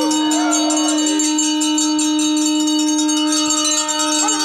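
A conch shell (shankh) blown in one long, steady held note, with bells ringing over it.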